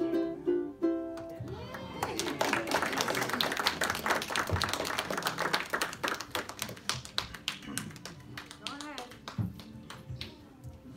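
A choir's final sung note over a ukulele ends about a second in, then a small audience applauds, the clapping thinning out over several seconds, with a few voices.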